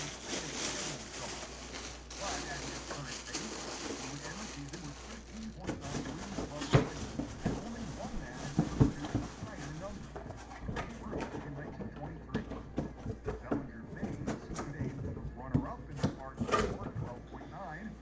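Clear plastic bag crinkling and rustling as it is handled, then a run of scattered knocks and scrapes from cardboard boxes being moved about.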